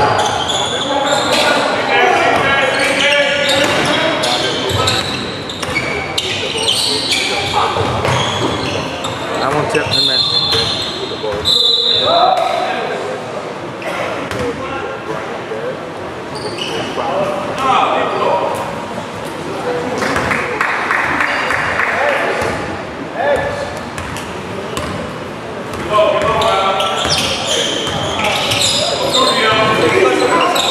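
Basketball bouncing on a gym's hardwood floor during play, with the shouts and talk of players and spectators echoing in a large hall.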